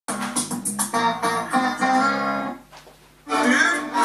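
Guitar-led music playing from a television broadcast, cutting off about two and a half seconds in; after a brief quiet gap, a voice over music begins near the end.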